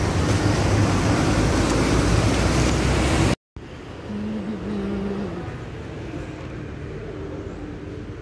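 Road traffic rushing past, loud and steady, which cuts off abruptly about three seconds in. Much quieter outdoor background with a faint low hum follows.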